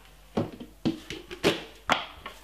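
Four sharp taps and clicks of spice containers being handled between seasonings, the last two the loudest.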